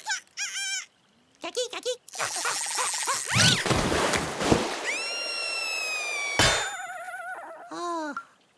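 Cartoon sound effects and a squeaky warbling character voice. In the middle a noisy watery rush with a quick upward swoosh, then a tone sliding slowly down, cut off by a sharp click, before the squeaky voice returns.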